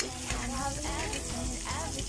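Garlic and sliced onion sautéing in hot oil in a wok: a steady sizzle with small crackles, and a metal spatula stirring through the pan. Singing runs underneath.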